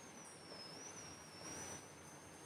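Quiet room tone: a faint hiss with a thin, high whine that wavers slightly in pitch.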